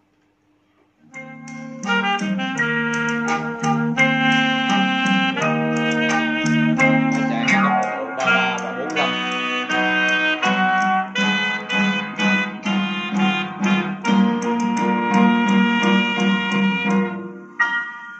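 Instrumental music playing from a red vinyl record on a Sharp GX-55 music center's fully automatic linear-tracking turntable. It starts about a second in, after a brief near silence.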